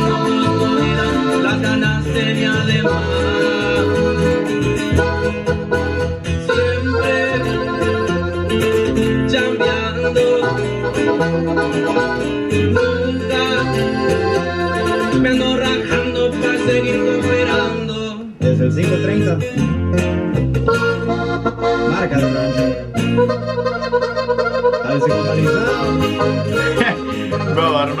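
Regional Mexican band music with accordion and guitars behind a male singer, playing continuously with only a momentary dip about two-thirds of the way through.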